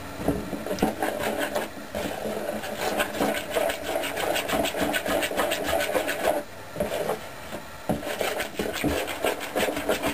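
A spoon beating thin waffle batter in a plastic mixing bowl, in quick, steady scraping strokes with a couple of brief pauses about two-thirds of the way through.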